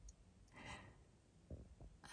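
Near silence, broken by one soft breathy exhale, like a sigh, from the person filming, about half a second in. A couple of faint clicks follow near the end.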